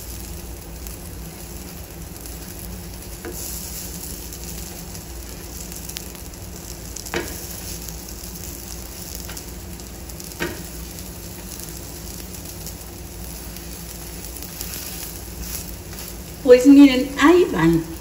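Moist corn-dough gorditas sizzling steadily on a hot comal over a high flame, the water in the dough cooking off, with two brief clicks of a metal spatula on the pan. A voice is heard briefly near the end.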